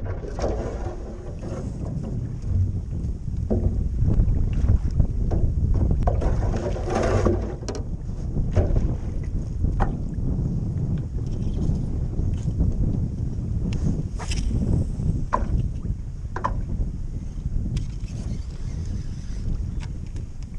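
Wind buffeting the microphone and waves lapping against a canoe's hull, a steady low rumble with a few scattered small knocks and clicks.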